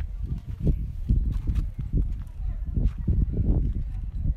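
Footsteps crunching on gravel and dry ground at a walking pace, over a constant low rumble.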